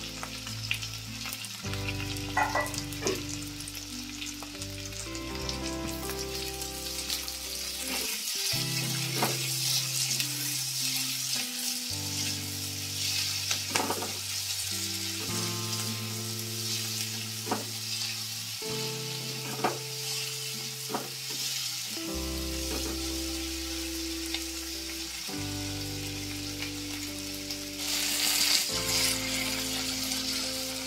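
Chopped onions, tomatoes and chillies sizzling in hot oil in a non-stick wok, with a silicone spatula stirring and scraping the pan now and then. The sizzle swells louder near the end. Soft background music plays underneath.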